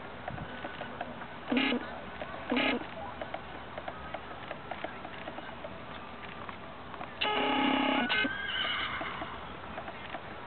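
A horse whinnying: two short calls about a second and a half and two and a half seconds in, then a longer call about seven seconds in that trails off in a sliding pitch.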